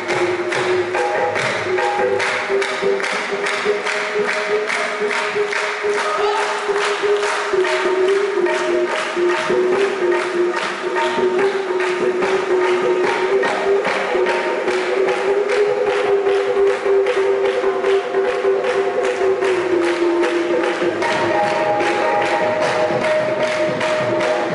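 Qawwali ensemble music: harmonium holding a melody over tabla, with a steady beat of group handclaps, about three claps a second.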